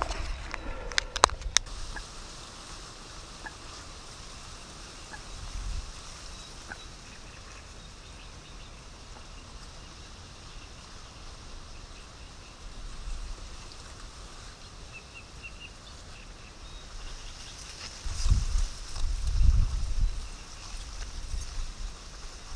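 Quiet outdoor ambience among reeds with a faint high chirp partway through. A few sharp clicks come about a second in, and low rumbling bumps come near the end.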